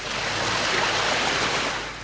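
A car driving through deep water on a flooded road, its tyres throwing up a rushing splash that swells to its loudest about a second in and then eases off.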